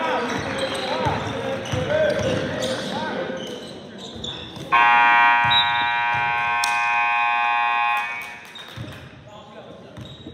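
Sneakers squeaking and a basketball bouncing on a hardwood gym floor, with players calling out. Then, about five seconds in, the gym's scoreboard buzzer sounds one loud, steady blast for about three seconds and cuts off.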